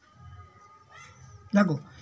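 A cat meowing: faint short calls, then a louder meow falling in pitch about a second and a half in.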